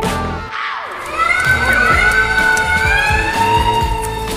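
Edited-in sound effects over background music: the music slows and drops away in the first second, then several wavering, gliding voices rise like a startled crowd crying out.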